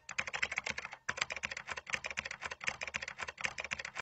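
Computer keyboard typing: a rapid, uneven run of key clicks, with a short pause about a second in.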